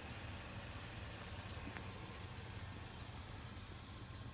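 A vehicle engine running steadily at low speed, a low, even hum.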